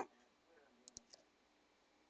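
Near silence with a few faint clicks about a second in.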